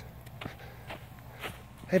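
Footsteps of a person walking on dry grass, about two steps a second.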